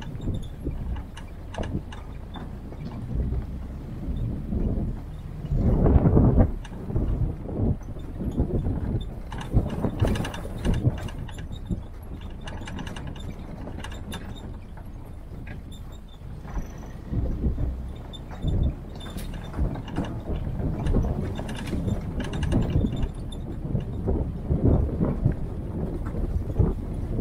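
Military-style Jeep driving along a bumpy dirt forest track: a low engine and chassis rumble under constant rattling and knocking of the body and fittings, with a heavier jolt about six seconds in and another about ten seconds in.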